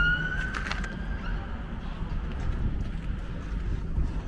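Distant siren, a single slowly rising wail that fades out about a second in, over a steady low outdoor rumble with a few faint clicks.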